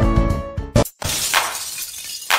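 Background music that stops just before a second in, followed by a sudden crashing, shattering sound effect that fades out with a hiss.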